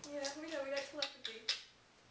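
Speech only: a young woman talking, with several sharp hissing 's' sounds, the words not made out.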